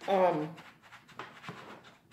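A short voiced sound at the start, then faint scraping and light clicks of a knife and fork cutting salad in a plastic takeout bowl.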